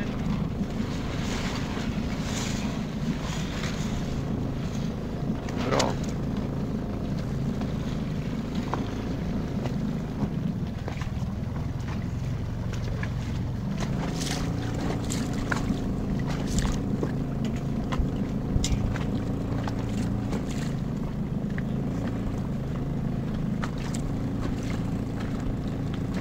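A boat's motor running low and steady at slow speed, with wind on the microphone and occasional light clicks and knocks.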